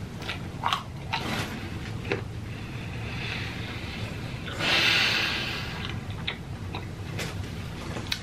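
Close-miked chewing of a deep-fried vegetable samosa: scattered crisp crackles and wet mouth sounds, with a long breath out through the nose about halfway through.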